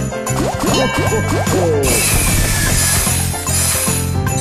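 Video slot sound effects over festive background music: a quick run of short rising pitch sweeps as the reels spin and land, then a bright shimmering whoosh from about two seconds in that fades out before the end.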